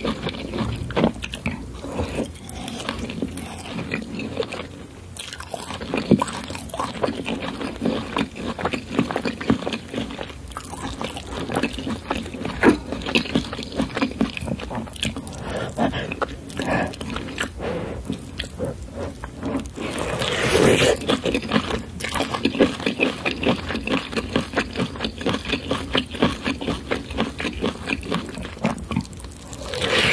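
Close-miked wet chewing, biting and mouth smacking of someone eating boiled potato and corn on the cob in curry sauce. A louder, longer wet mouth sound comes about twenty seconds in.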